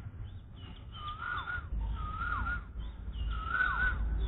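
A bird's whistled call, three times about a second apart, each note held briefly then dropping in pitch, over a steady low rumble that grows louder partway through.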